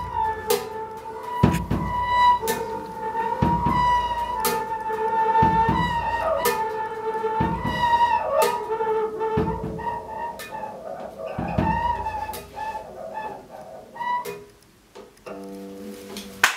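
Free-improvised jazz for arco double bass and drum kit. The bowed bass holds a high, wavering tone over a steady pulse of crisp stick hits about once a second, with a deeper, ringing hit about every two seconds. The playing thins out near the end.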